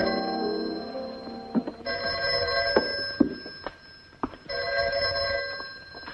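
A piano chord fades away, then a telephone bell rings twice, each ring about a second and a half long. A few light knocks fall between the rings.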